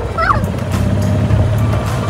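Golf cart driving along a paved road: a steady low rumble from the cart and its tyres, with faint background music over it.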